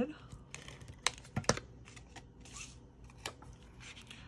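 Cardstock and paper squares handled on a wooden tabletop: light rustles and taps, with a few sharp clicks and a short soft hiss of paper sliding.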